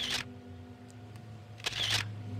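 Background music of steady held notes, with two short sharp clicks, one at the start and one near the end.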